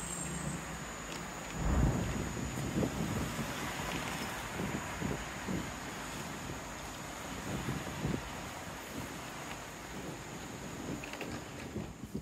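Road traffic at a city intersection, cars passing with a steady noisy hum, with wind buffeting the microphone in low thumps. A louder low rumble comes about two seconds in.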